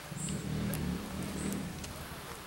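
A motor vehicle's engine running nearby, swelling over the first second and a half and then easing off, over scattered light clicks.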